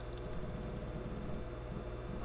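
ARAID 3500 backup drive enclosure running on its own with its newly replaced, quieter fan: a steady low hum of fan and drives.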